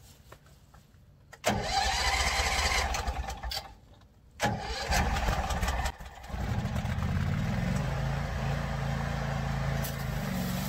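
18 hp gasoline engine of a Power Line pressure washer being started: it fires in two short bursts that cut out, then catches about six seconds in and settles to a steady run.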